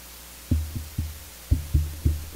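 A series of low, resonant thuds, about two a second, beginning about half a second in, each with a short booming tail, over a steady faint hiss.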